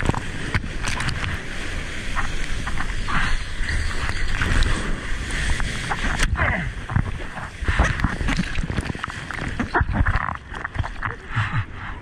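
Water splashing and churning against a surfer's action camera as he paddles through whitewater, with an underwater bubbling rush while the camera is submerged near the start. The water noise eases off about ten seconds in.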